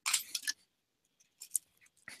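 Clear plastic water bottle crackling as it is tipped up for a drink: a short rustle in the first half second, then a couple of faint clicks about a second and a half in.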